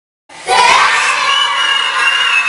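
A group of children shouting and cheering together, starting suddenly about half a second in, with one high voice holding a long shout over the rest.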